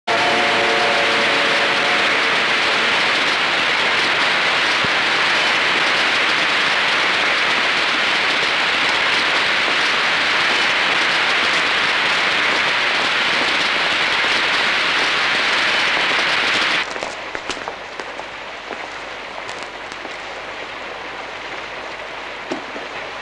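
Heavy rain pouring steadily, a dense hiss, then cutting suddenly to much softer rain near the end.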